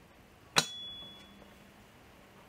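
A single sharp metallic clink, metal parts of a bare engine block and crankshaft knocking together as they are handled, leaving a thin ring that fades over about a second.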